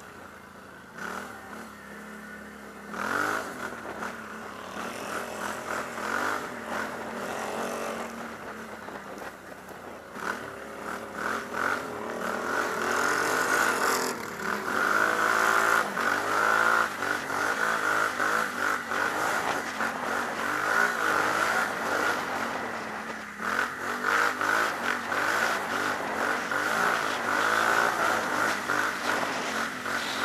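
Can-Am Outlander XXC 1000 ATV's V-twin engine revving under acceleration, its pitch rising and falling over and over as the rider speeds along. It grows louder from about twelve seconds in.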